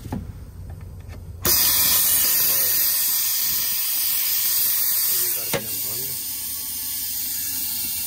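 Compressed air hissing out of a semi truck's air brake system while a trailer is being dropped. It starts suddenly about a second and a half in, runs loud and steady, and eases slightly past the halfway point.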